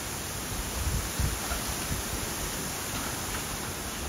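Steady rushing of wind with rustling bamboo leaves as the fallen bamboo is pulled off the guardrail, with a few low thumps about a second in.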